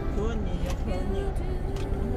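Road traffic crossing an intersection, a city bus among the cars, heard as a steady low rumble.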